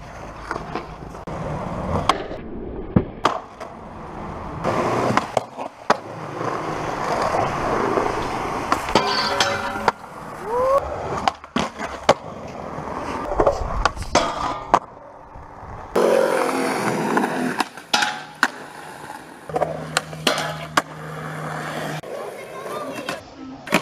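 Skateboard wheels rolling over concrete, broken by many sharp clacks of tail pops, landings and the board striking ledges, over several separate takes that change abruptly.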